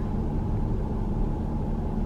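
Steady low rumble of a car in motion, its engine and road noise heard from inside the cabin.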